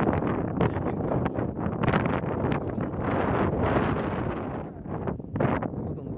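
Wind buffeting a camera's built-in microphone: a loud, gusting rumble that eases briefly about five seconds in.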